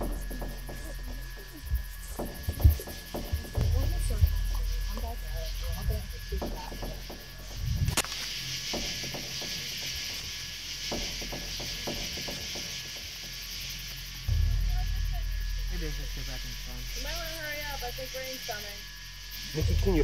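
Handheld camcorder recording outdoors at night: a low rumble of wind on the microphone, scattered clicks and handling knocks, and faint muffled voices in the background.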